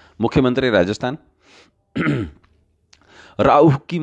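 Speech only: a man talking in Hindi in short phrases with pauses between them.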